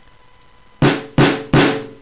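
Sampled snare drum played three times in quick succession, heavily compressed with FL Studio's Fruity Compressor: hard, punchy hits that sound like a snare struck with a bat or a two-by-four.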